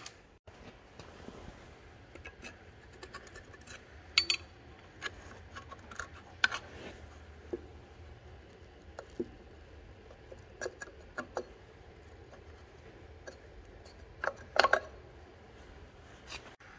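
Scattered light metallic clicks and clinks of a socket extension on bolts and of a bolted side cover being worked loose and lifted off a Caterpillar RD-4 engine, with a louder cluster of clicks near the end.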